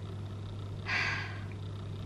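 A woman's short breathy exhale about a second in, over a steady low hum.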